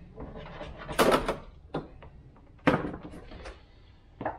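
Plastic interior door trim panel of a Toyota 4Runner being pulled off the door, with its retaining clips popping out. There is a rattling burst of clicks about a second in, then a couple of sharp single snaps.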